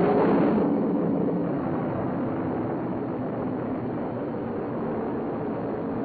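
Atlas ICBM's liquid-fuelled rocket engines firing at liftoff: a sudden loud rush of noise that eases slowly as the missile climbs away.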